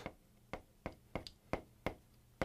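Chalk tapping and scraping on a blackboard as characters are written: a series of short, sharp taps, about seven in two seconds.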